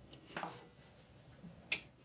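Faint handling noises of kitchen items on a countertop: a brief scrape about a third of a second in, then a sharp click near the end.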